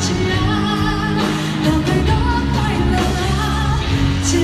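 Mandarin pop song performed with singing over a band, a drum kit keeping the beat with cymbal hits.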